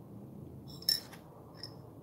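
A mug clinks as it is picked up: one sharp, briefly ringing clink about a second in, and a fainter clink just after.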